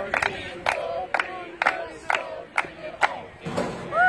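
A group clapping in unison, about two claps a second, while shouting a cheer chant.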